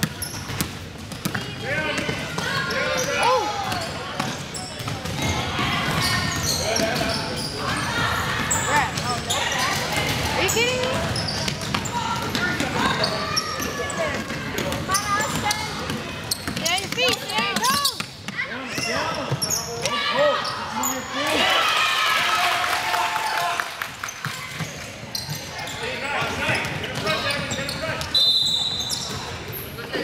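A basketball bouncing on a hardwood gym floor amid overlapping voices and shouts of players and spectators.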